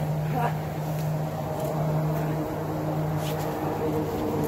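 Toy swords clacking together a few times in a mock sword fight, over a steady mechanical hum.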